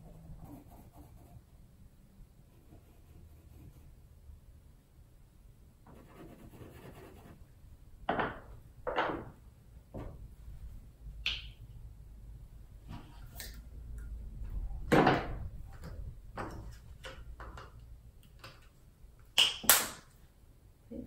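Art supplies being handled on a tabletop: quiet for the first few seconds, then scattered knocks, scrapes and one ringing clink as pencils and paint tubes are picked up and put down, with two sharp clicks near the end.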